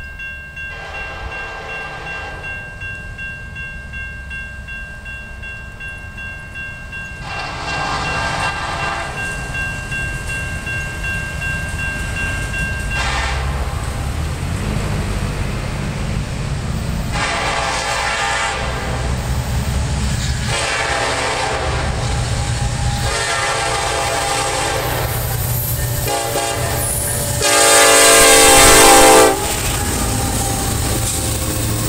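Norfolk Southern EMD SD70ACE diesel locomotive sounding its air horn in about eight blasts as it approaches, with the last and loudest blast as it comes alongside. Under the blasts, the low rumble of the locomotive and train grows louder.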